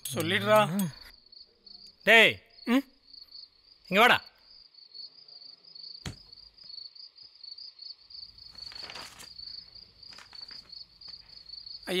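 Crickets chirping in a steady, fast-pulsing high trill. Several short voice sounds come near the start and around two and four seconds in, with a single sharp click about six seconds in.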